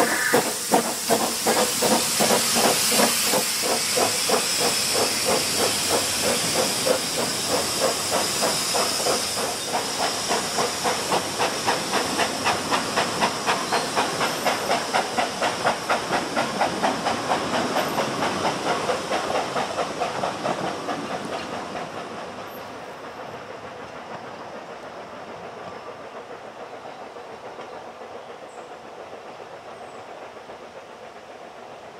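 Ffestiniog Railway double Fairlie steam locomotive pulling away: steam hissing loudly at first, then steady chuffing exhaust beats that quicken as it gathers speed. From about two-thirds of the way through, the beats fade as the train moves off into the distance.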